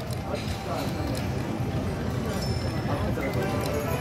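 EGT slot machine's electronic game music and reel-spin sounds, with a short high beep about two and a half seconds in, over casino background chatter.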